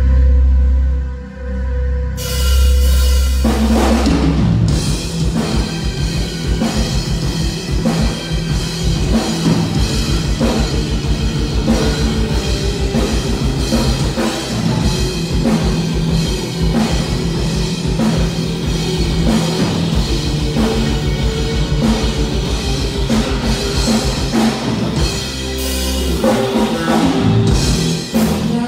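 A live rock band playing loud on stage: drum kit, electric guitars and bass. A low note is held for the first two seconds, the band comes in about two seconds in, and the drums drive a fast, steady beat from about five seconds in.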